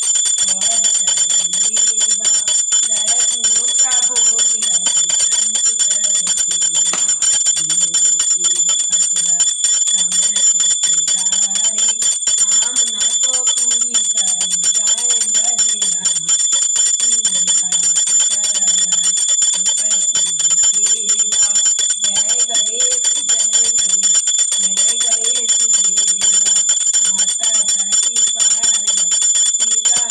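A small puja bell rung rapidly and without a break through an aarti, giving a steady high ringing, with a low voice singing or chanting underneath.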